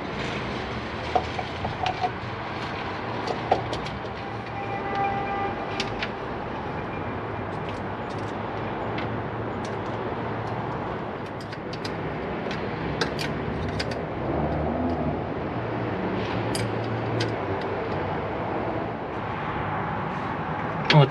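Light metallic clicks and clinks of a carburetor being set onto the intake manifold studs and its linkage being handled, scattered over a steady background rumble.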